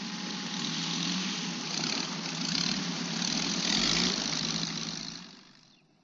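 Light propeller plane's piston engine droning steadily in flight, with rushing wind, fading away near the end.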